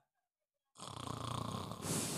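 A performer's mock snoring, starting just under a second in after a moment of silence.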